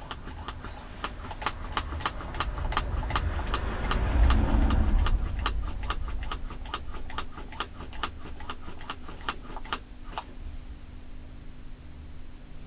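Hand-operated brake bleed vacuum pump being squeezed over and over, its pistol-grip lever and valves clicking in a quick, regular rhythm of a few strokes a second, thinning out near the end. It is pulling a vacuum on a sealed jar of wood soaking in oil.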